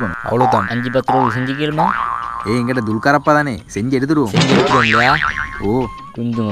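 Men talking animatedly, their voices swooping widely up and down in pitch, over background music.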